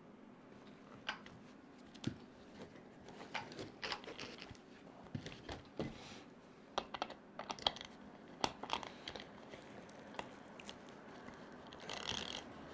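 Scattered light clicks and taps of hands handling RC truck parts: a wheel nut and a plastic paddle tire being fitted back onto the wheel hub.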